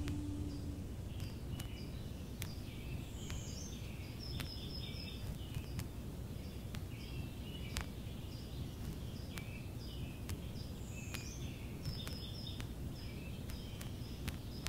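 Outdoor ambience of small birds chirping in short, repeated calls over a low steady rumble, with scattered faint clicks.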